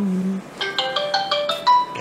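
Mobile phone ringtone playing a marimba-like melody of clear stepped notes. A low held tone under it stops about half a second in, and a run of quick short notes follows.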